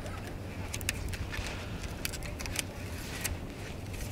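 Faint clicks and crackles from handling a plastic third brake light housing and peeling the adhesive backing off its foam waterproof seal, over a steady low hum.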